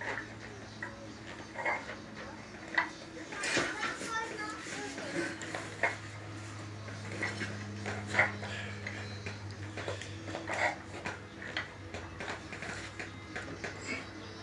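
Metal weight plates on a plate-loaded dumbbell clinking and knocking at irregular intervals as it is curled, over a steady low hum.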